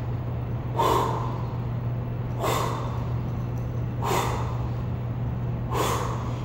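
A woman's short, forceful exhales, four of them about a second and a half apart, in time with her barbell repetitions. A steady low hum runs underneath.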